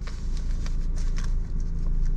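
Ford Ranger pickup engine idling steadily, heard from inside the cab, with light, irregular clicks and taps over it.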